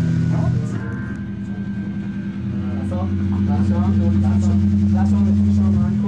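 Electric guitars and bass hold one sustained chord through their amplifiers, ringing out at the close of a hardcore song, with crowd voices shouting over it. The held chord stops suddenly at the end.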